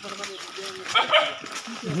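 Two short high-pitched animal yelps close together about a second in, over people talking.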